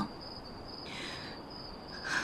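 Crickets chirping in a steady, high, pulsing trill, with a brief soft hiss about a second in.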